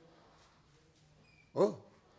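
Near silence with a faint low hum for about a second and a half, then a man's voice says a short 'ho', its pitch rising and falling.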